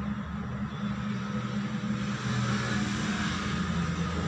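Steady low mechanical hum of room background noise, a few low tones held level throughout.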